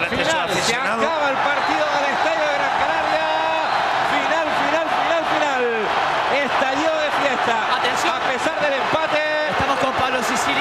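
Large stadium crowd of home supporters shouting and chanting loudly and without a break, many voices overlapping, celebrating a late equalising goal.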